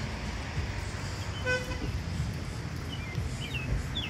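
Outdoor street background with a steady low rumble, a single short horn toot about one and a half seconds in, and a few faint high chirps near the end.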